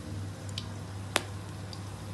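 Whole spices frying on a low flame in oil in a wok: a quiet, steady sizzle with one sharp pop a little after a second in.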